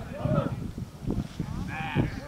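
Distant shouted calls from people on a football pitch, one near the start and another near the end, over wind rumble on the microphone.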